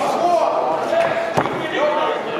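Spectators' voices in a large hall, with one sharp thump about one and a half seconds in from the boxers exchanging in the ring.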